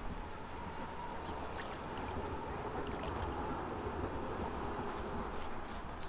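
Steady outdoor background noise: a low rumble with a faint, even hum over it and no distinct events.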